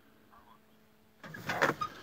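A faint, brief voice from a mobile phone on loudspeaker, then rustling and a few clicks from handling and movement starting about a second in.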